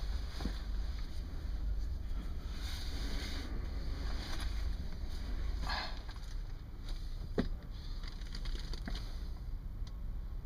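Rustling and small knocks of a person settling under a sleeping bag in a rowing boat, over a steady low rumble, with one sharp click about seven seconds in.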